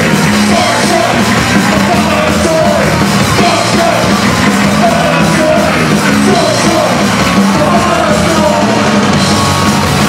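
Punk band playing live at full volume, a dense, steady wall of guitars, bass and drums with shouted vocals.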